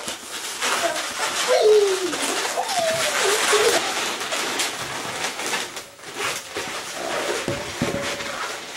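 Latex twisting balloons, a pink 350 and a blue-green 260, squeaking and rubbing against each other as they are twisted together. Wavering squeaks rise and fall in pitch during the first half, and shorter ones come near the end.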